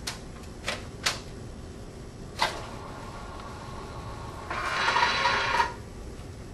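Hospital bed being lowered and its side rail raised: a few sharp clicks and knocks in the first half, then a louder mechanical rattle-whir lasting about a second near the end.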